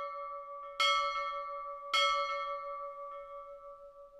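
A bell rung twice, about a second in and again a second later, over the ringing of a strike just before. Each strike rings on and fades slowly.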